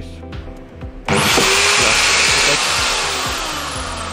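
Corded electric drill, powered up through a smart-switch relay, starting suddenly about a second in: its motor whines up to speed, then the whine slides slowly down in pitch as the sound fades.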